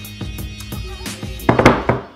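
Background music with a steady beat. Near the end, a loud short burst of laughter and hand clapping.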